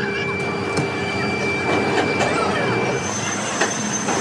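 Steady workshop machinery noise with thin whining tones, and a few sharp metallic clinks from a heavy steel beam and its lifting chains as it is moved.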